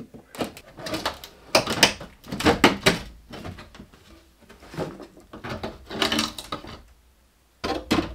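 A wooden shipping crate being opened: metal edge tabs pried back and the plywood lid lifted off, giving a run of scrapes, clicks and wooden knocks in irregular clusters, with a loud knock near the end.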